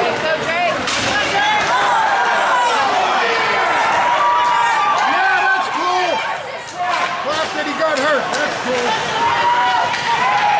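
Many spectators talking and calling out at once in the echoing hall of an ice rink during a hockey game, with a few sharp knocks from play on the ice.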